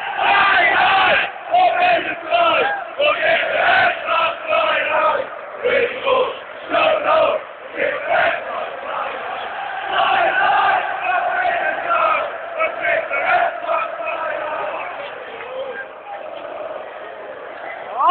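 A football crowd of home supporters chanting and singing together in a stadium, many voices at once, easing off a little near the end.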